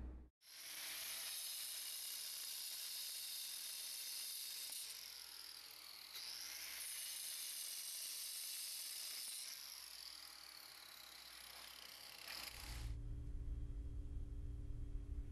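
Angle grinder with a diamond wheel cutting into a concrete floor joint, a steady high, hissing grinding noise that dips briefly in pitch near the middle and stops suddenly about thirteen seconds in.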